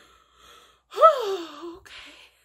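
A woman's faint breathy intake, then about a second in a loud, breathy vocal gasp that rises briefly and falls in pitch as it trails off: an overwhelmed reaction.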